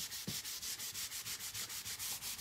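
Paper towel rubbing wet stain off a wooden board in quick back-and-forth strokes, about six or seven a second, wiping back the stain so the wood grain shows through.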